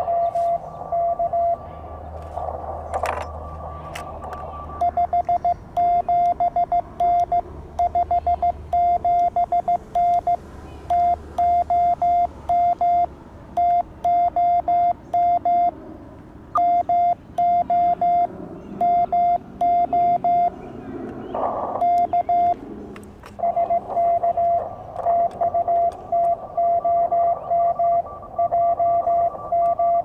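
Morse code (CW) tones from a YouKits HB-1B QRP CW transceiver, one steady pitch keyed in dots and dashes, pausing for about three seconds near the start. The keying is a contact exchange of signal reports, names and locations, ending in a sign-off with thanks and 73.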